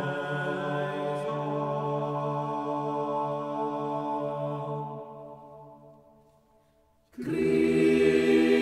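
Unaccompanied vocal ensemble, mostly low male voices, singing the Kyrie of an early sixteenth-century polyphonic Requiem. A sustained chord fades away about five seconds in to a moment of near silence, and the voices come back in louder near the end.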